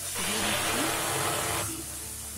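Wet lote (Bombay duck) fish hitting a hot kadai with mustard oil and sizzling, loud from the moment they land and easing to a lower, steady sizzle near the end.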